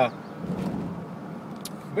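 Steady road and engine noise inside the cabin of a moving car.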